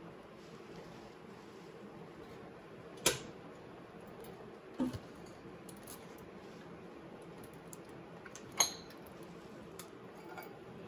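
A few sharp metal clinks and knocks, one about three seconds in, a doubled one around five seconds and another near the end, over a faint steady hum.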